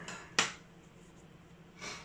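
A single sharp tap about half a second in, then a quiet stretch and a short breath drawn in near the end.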